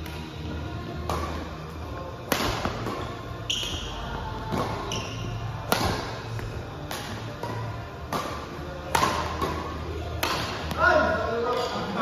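Badminton rackets striking a shuttlecock in a doubles rally, a sharp hit about every second, ending near the end with players' voices.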